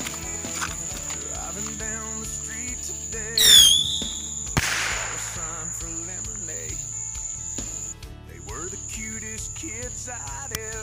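A bottle rocket's short whistle, falling in pitch, about three seconds in and the loudest sound here, followed about a second later by a sharp pop. Underneath, a country song with a male singer plays throughout.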